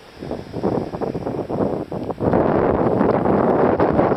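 Wind buffeting the microphone in irregular gusts, becoming loud and steady from about two seconds in.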